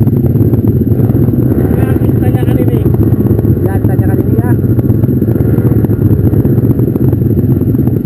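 Several off-road trail motorcycles running with their engines idling, a steady low drone, while riders call out indistinctly over them.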